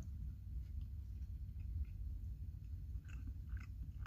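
A person chewing a bite of mini quiche, faint, over a low steady hum, with a few soft mouth clicks near the end.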